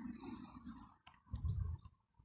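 Handling noise from the camera being picked up and turned: a couple of sharp clicks about a second in, followed by a short low bump.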